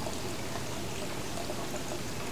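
Steady, even hiss of background noise with no distinct sounds standing out.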